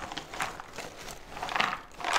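Thick white canvas zipper bag being handled and shaken out over a cardboard puzzle box, giving several soft rustles as the jigsaw pieces inside shift and spill out.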